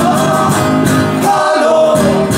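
Live band music: strummed acoustic guitar with male vocals and held melody notes over a bass line.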